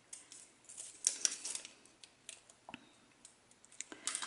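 Faint, scattered clicks and rustles of small craft tools being handled on a desk, including a plastic glue dot dispenser being picked up, with one sharper click midway.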